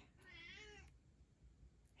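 A domestic cat meowing once, faint: a single drawn-out, sad-sounding meow under a second long that rises and then falls in pitch.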